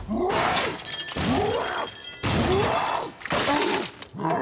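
Cartoon sound effects of a machine being smashed apart: four loud crashes of breaking metal, each about a second long, one after another.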